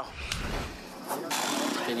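A low rumble in the first half-second, then background noise with murmured voices; a man starts speaking near the end.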